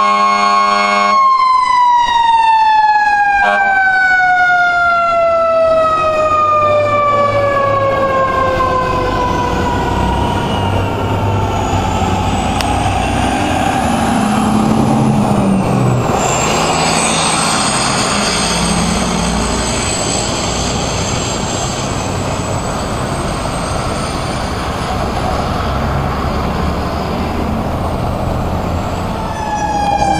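Fire truck siren held at a steady high pitch alongside a low horn blast. The horn stops about a second in, and the siren then winds down slowly in pitch over about eight seconds. A heavy truck engine runs underneath, fainter sirens rise and fall, and a new siren starts wailing near the end.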